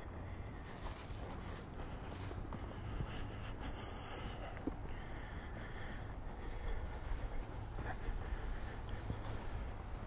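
Walking on a dirt forest trail: footsteps and rustling with the walker's heavy breathing, picked up by a camera's built-in microphone over a steady low handling rumble.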